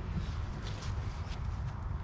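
Low, steady wind rumble on the microphone, with faint rustling and a few light steps on grass and leaf litter.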